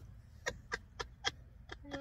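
Breathy, nearly soundless laughter: a run of short huffs, about four a second, starting about half a second in.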